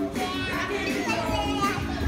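Music playing with a group of young children singing and calling out over it.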